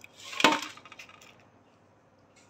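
A metal basin set down on a concrete floor: one sharp clank about half a second in that rings briefly, followed by faint rustling of soil.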